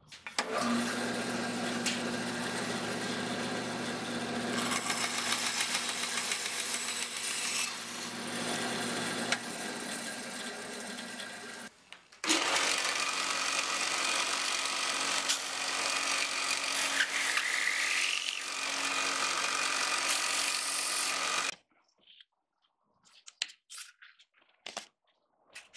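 A small electric power tool's motor running steadily with a hum and a hiss for about eleven seconds, stopping briefly, then running again for about nine seconds before cutting off.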